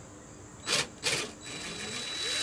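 Cordless drill/driver turning a grab-handle mounting screw in an RV wall: two short trigger blips, then a steady motor whine from about a second and a half in.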